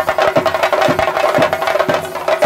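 Traditional temple percussion ensemble playing a fast, dense drum rhythm, with strong beats about twice a second and a steady ringing tone over the strokes.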